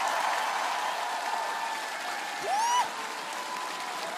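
Studio audience applauding, strongest at first and easing slightly, with a single rising-and-falling whoop from one voice about two and a half seconds in.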